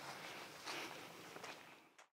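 Faint outdoor background with soft footsteps on grass, two of them a little louder about two-thirds of a second and a second and a half in.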